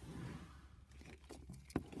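Faint handling noise: a few light clicks and rustles as foil minifigure packets and small plastic Lego pieces are moved about on a table, over a low steady hum.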